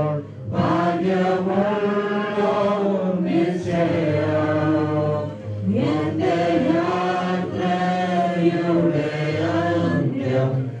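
A group of voices singing a slow hymn in long, held phrases, with brief breaks for breath about half a second in, near four seconds and at about five and a half seconds.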